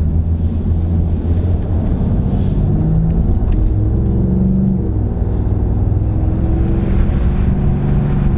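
2017 Ford F-150 Raptor's twin-turbo EcoBoost V6 pulling the truck along, heard from inside the cab as a low rumble. The engine note climbs in pitch and drops back just before five seconds in, as the ten-speed automatic shifts up.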